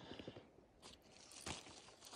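Near silence: a faint outdoor background with a few soft clicks.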